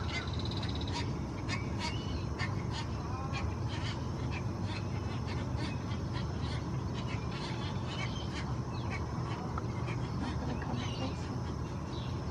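Birds calling around a wetland: many short sharp chips and clicks and a few brief whistled notes, scattered throughout, over a steady low rumble.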